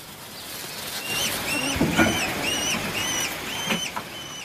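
Peregrine falcon chicks in the nest calling: a string of short, thin, high calls, about three a second, beginning about a second in.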